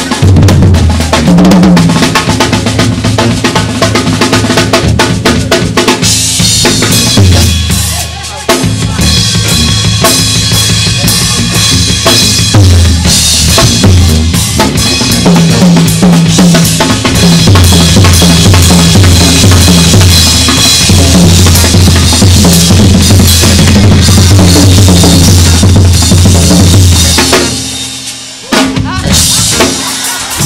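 Live drum solo on a jazz drum kit: dense snare, bass drum and tom patterns with rimshots and rolls, breaking off briefly about eight seconds in and again near the end.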